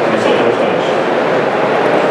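Loud, steady background din from a poor-quality recording, with a man's speaking voice faintly buried under it in the first second.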